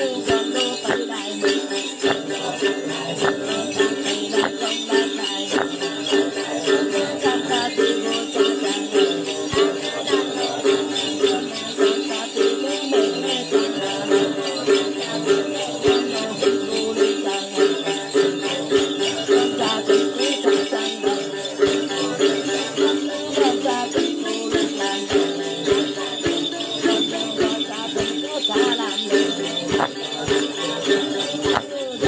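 Then ritual music: a đàn tính, the long-necked gourd lute, plucked over a steady beat while a cluster of small jingle bells (xóc nhạc) is shaken in time.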